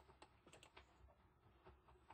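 Near silence with a series of faint, irregular clicks from computer input as the CAD view is changed.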